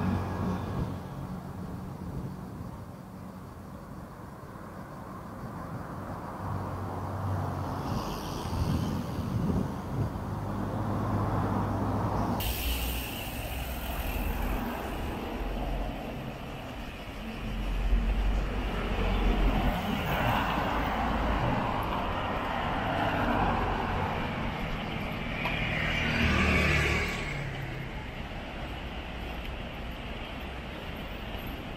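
Road traffic on the road beside the path: cars going past, the sound swelling several times as they pass. The tone changes abruptly about twelve seconds in, where the recording switches from one action camera's microphone to another's.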